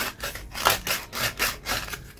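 Coarse sandpaper rubbed by hand against a black pipe fitting in quick back-and-forth strokes, about three a second, to wear away a thin leftover piece of a drilled-out collar. The strokes stop near the end.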